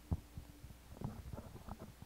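Soft, low thumps and knocks from a handheld microphone being handled and moved, over a faint steady low hum from the sound system.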